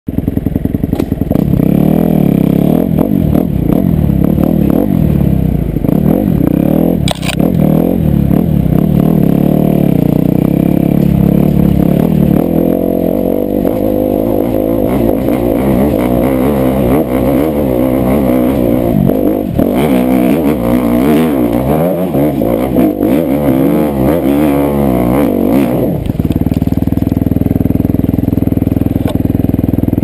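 Dirt bike engine revving up and down under load as it climbs a steep, rough trail, with occasional sharp knocks from the bike over the ground. About four seconds before the end the engine settles to a steadier note.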